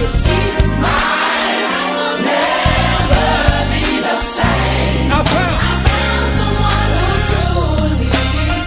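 Upbeat gospel music: a choir singing over a band with a steady bass line and drums.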